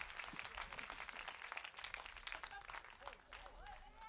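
Audience applauding, a dense patter of many hands clapping that thins out toward the end, with faint voices just audible in the crowd.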